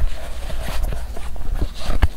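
Close-miked hands handling a leather traveler's notebook: irregular soft taps, knocks and rubbing on the leather cover as its elastic cord closure is pulled off.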